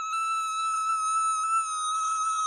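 A woman holding one long, very high sung note, steady in pitch.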